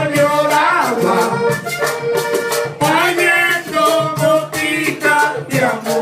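Live vallenato ensemble: a button accordion plays a melody over the steady rhythm of a caja drum and a metal guacharaca scraper, with no sung lyrics.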